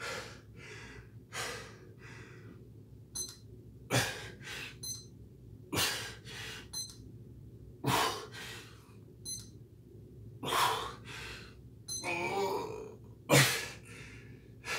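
A man breathing hard through push-ups, with a loud, sharp exhale every couple of seconds, each followed by softer breaths.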